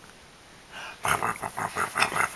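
A young baby laughing: a quick run of short breathy chuckles, about six a second, that starts about a second in after a near-quiet pause.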